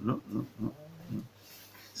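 A man's voice giving a few short, low murmured sounds in the first second or so, then a faint quiet room.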